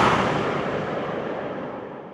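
A loud rushing rumble that dies away steadily to silence over about two seconds.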